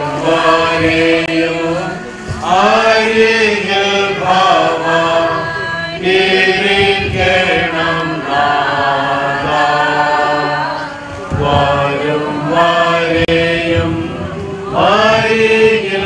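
A group of voices singing a slow hymn together in unison, in long held phrases that restart every few seconds.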